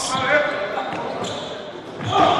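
Indoor handball court ambience in a large hall: a handball bouncing on the wooden floor and faint players' voices echoing.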